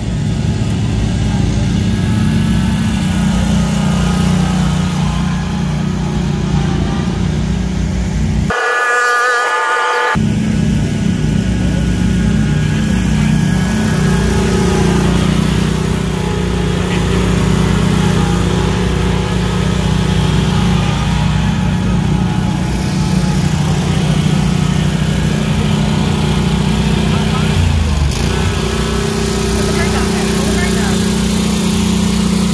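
Commercial stand-on and zero-turn mower engines running steadily with a low hum, broken once about nine seconds in by a short stretch of a different pitched sound.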